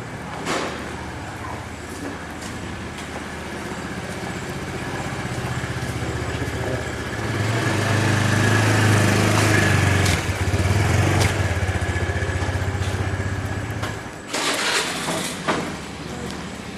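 A motorbike engine running, growing louder through the middle and stopping suddenly about two seconds before the end.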